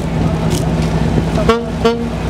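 Saxophone sounding two short notes, about a second and a half in, over a steady low hum of an idling vehicle engine.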